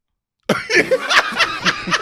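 A group of men bursting into loud, hearty laughter about half a second in, after a brief dead silence, with repeated bursts of laughs.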